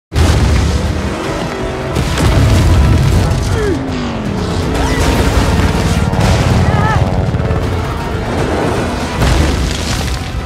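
Film sound mix of missile explosions: heavy booms that recur every second or two, over a music score.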